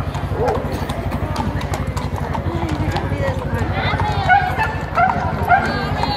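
Horses walking on a stone-paved street, their hooves clip-clopping throughout. People's voices come in over them, and the voices are loudest in the second half.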